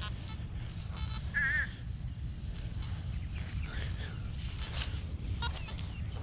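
Nokta Makro Simplex metal detector in field mode sounding a few short, scattered target beeps as the coil is swept over grass, low signals of the kind it gives for foil and scrap aluminium. A steady low rumble runs underneath.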